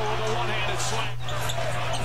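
NBA game broadcast audio playing at a moderate, even level: a basketball bouncing on the court with faint commentary over a steady low hum.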